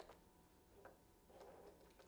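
Near silence, with a few faint short ticks.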